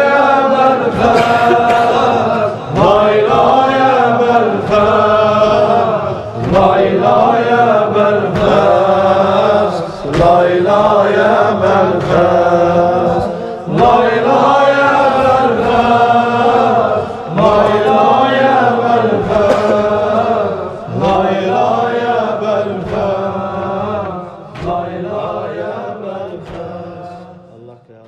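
Mərsiyyə lament chanted by voice: a mourning refrain sung in repeated phrases of about three and a half seconds each, fading out near the end.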